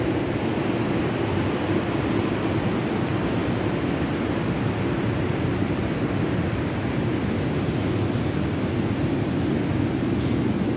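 Steady, even rushing noise of ocean surf, with wind.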